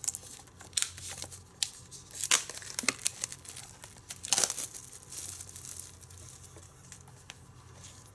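Clear plastic shrink wrap being torn and peeled off a Blu-ray case by hand: irregular crinkling and crackling with a few louder rips, growing quieter after about five seconds.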